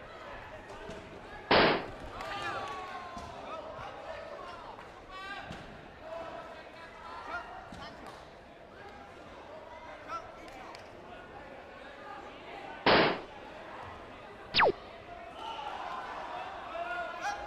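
Taekwondo kicks smacking onto padded body protectors, two loud sharp hits about a second and a half in and near thirteen seconds, over the chatter and shouts of a busy sports hall. A brief falling whistle-like tone follows the second hit.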